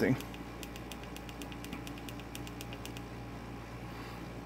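Quiet room tone with a low steady hum. For about two seconds in the middle there is a run of faint, quick, high-pitched ticks, about eight a second.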